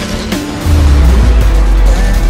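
Dramatic trailer music, with a loud, deep bass boom starting about two-thirds of a second in and holding to the end.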